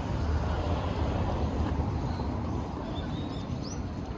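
Outdoor park ambience: a steady low rumble with a faint noisy hiss above it, and a short rising bird chirp near the end.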